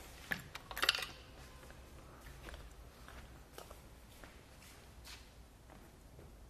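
A few light knocks and rattles in the first second as a road bike is lifted off the cradles of a hanging-style hitch bike rack, then a few faint ticks.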